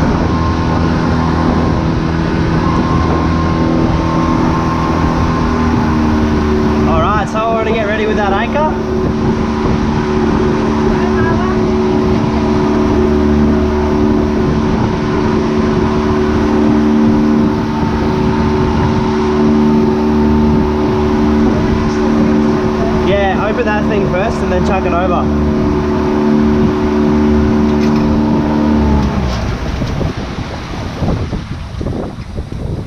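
The outboard motor of a small pontoon barbecue boat running steadily under way. Its pitch steps up slightly about six seconds in, and the engine sound drops away near the end.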